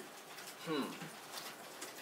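A man's short, quiet 'hmm' with a falling pitch, set in faint room tone.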